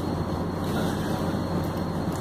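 Steady low mechanical drone: a constant machinery hum with an even rushing noise over it, no clear events.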